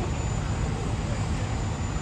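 Steady low rumble of fire-truck engines running, with faint distant voices over it.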